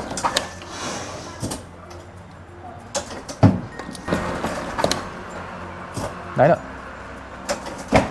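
Claw-crane machine being played: sharp clicks and knocks from its joystick and button scattered over a steady low machine hum, with a short voice about six seconds in.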